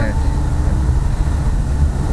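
Cabin noise of a car being driven: a steady low rumble of engine and road heard from inside the taxi.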